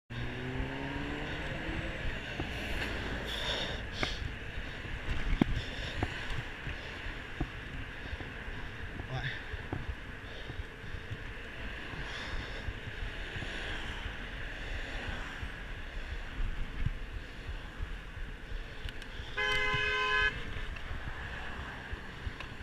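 Road traffic noise with wind on the microphone of a moving rider, an engine rising in pitch in the first two seconds. Near the end, a vehicle horn sounds once for about a second.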